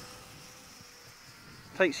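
Faint, steady buzz of a mini F4U Corsair RC plane's small electric motor and propeller flying high overhead, holding one pitch and fading out a little past halfway. A man starts speaking near the end.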